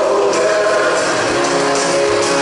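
A live band playing a song with singing, heard from within the crowd. Vocals over drums, electric guitars and keyboards, loud and continuous.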